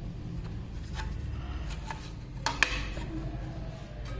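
Light clicks and taps of a clear plastic power bank battery case and an 18650 lithium-ion cell being handled, the sharpest pair about two and a half seconds in, over a low steady hum.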